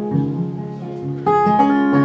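Acoustic guitar played alone, its notes ringing on, with a louder chord struck just over a second in.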